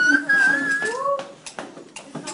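A woman crying in long, high, wavering wails in the first second, then in shorter rising cries that trail off near the end.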